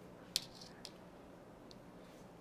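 Knitting needles clicking as stitches are knit: one sharp click about a third of a second in, a softer click half a second later and a faint tick near the end, over quiet room tone.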